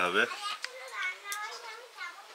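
Children talking and playing in the background, with a couple of light clicks.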